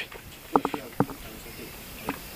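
A pause between a man's spoken questions outdoors: faint background haze with a few short clicks about half a second in and one more about a second in.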